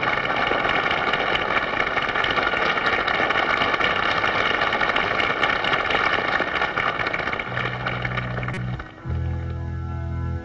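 Studio audience applauding and cheering in a steady, dense wash as a song ends. Near the end it stops and a sustained keyboard chord begins the next song's intro.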